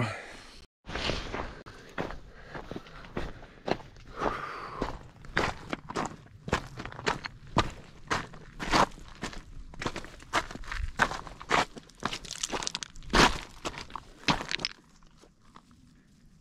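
Footsteps walking down a snowy, stony mountain trail, about two steps a second, crunching on snow and gravel. The steps stop shortly before the end.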